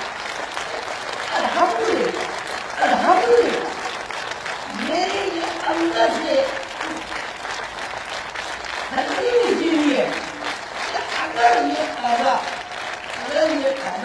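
Audience applauding, a dense patter of clapping that runs on, with a voice speaking over it.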